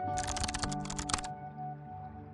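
Rapid computer-keyboard typing: two quick runs of keystrokes lasting about a second in all, then stopping, over soft background music with steady held notes.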